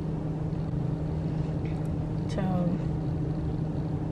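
Steady low hum of a car's engine idling, heard from inside the stationary car's cabin.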